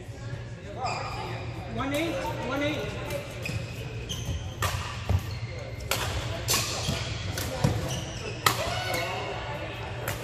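Badminton rally: sharp racket hits on the shuttlecock, several in the second half, with people's voices around the court.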